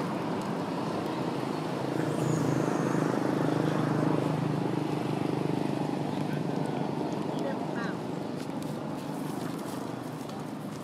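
Steady motor hum, louder between about two and five seconds in and easing afterwards, with faint voices under it.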